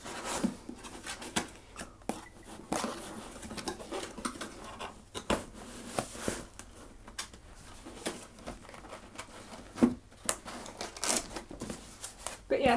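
Cardboard box being handled as someone pushes and tucks its lid and flaps to close it, the box packed too full to shut easily: irregular scrapes, rubs and sharp taps of cardboard, a few louder than the rest.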